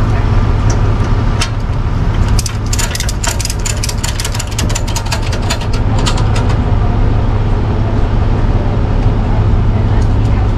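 Tow truck engine idling steadily, with a rapid run of sharp metallic clicks and clinks over the first half as the wheel-lift tie-down strap and hooks are worked and tightened at the car's wheel.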